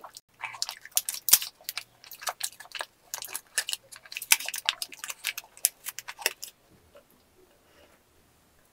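Foil-lined paper wrapper of a small Excellent ice cream piece crinkling as it is peeled open by hand: dense crackling with a few sharp snaps, stopping about six and a half seconds in.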